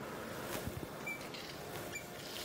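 Faint, steady operating-room background noise with a few small ticks and two very short high blips, one about a second in and one near the end.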